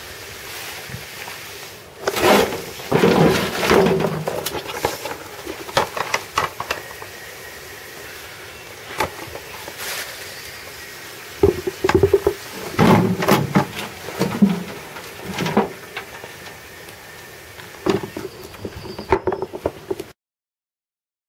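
Handling and tipping out a black plastic bucket of potato plants into a wheelbarrow: knocks and scrapes of the bucket against the barrow, with soil and roots tumbling and rustling. The noise comes in bursts, about two seconds in and again from about eleven seconds in, with a shorter burst near the end.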